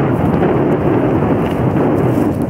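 Wind buffeting the camera microphone: a loud, steady low noise with no distinct events in it.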